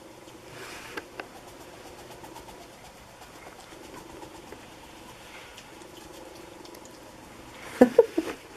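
A pet opossum moving about on fabric blankets: faint rustling and small scattered clicks over a low steady room hum, then a short, louder burst of sound near the end.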